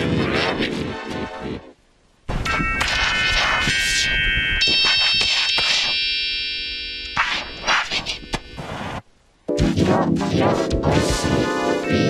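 Pitched-down soundtrack of Japanese McDonald's TV commercials: jingle music with held chime-like chords in the middle and short hits and effects either side. It cuts out briefly twice, about two seconds in and about nine seconds in, as one ad gives way to the next.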